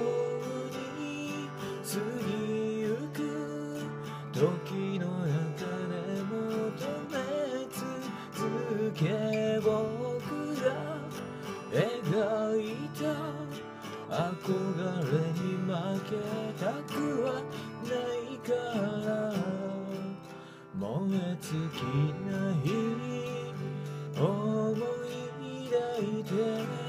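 Steel-string acoustic guitar strummed in a steady chord accompaniment.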